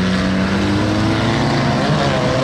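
Engines of several banger-racing vans running in a steady drone, one engine's note slowly rising in pitch as it picks up speed.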